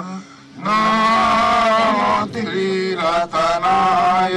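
A Buddhist monk's chant, sung by a male voice over a microphone on a steady low pitch in long held phrases, with brief breaks about half a second in and again past the two-second mark.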